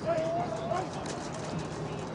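Distant voices calling out across a football field, one drawn-out call in the first second, over steady outdoor background noise.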